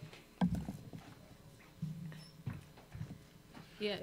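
Soft, scattered laughter and chuckling from a few people, broken by several light knocks.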